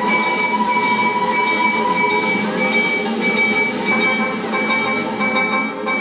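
Live chamber ensemble playing contemporary music, with flute and vibraphone in a dense texture of held tones. A high note pulses on and off at an even rate over the sustained layer, and the highest sounds thin out near the end.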